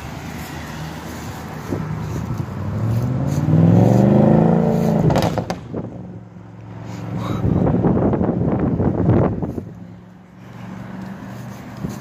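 Audi S6 accelerating hard away: its engine note climbs steadily for about two seconds, breaks off sharply about five seconds in with a few sharp cracks, then surges loudly again before fading as the car drives off.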